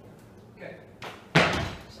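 A loud, sharp thud about a second in as a lifter's feet land flat on the gym floor from the jump-and-drop under a barbell, with a smaller knock just before it.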